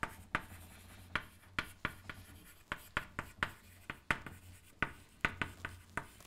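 Chalk writing on a blackboard: an irregular string of sharp taps and short scratches, about two or three a second, as words are written out.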